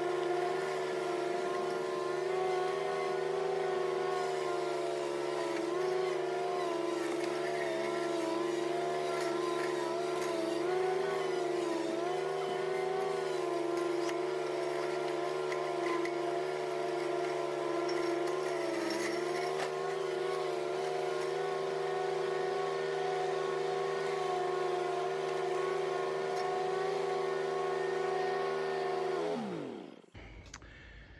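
Zero-turn ride-on mower's engine running at a steady speed, its pitch wavering slightly now and then. Near the end it shuts off and the pitch falls away quickly.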